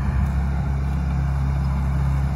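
Engine running at a steady pitch, an even low drone.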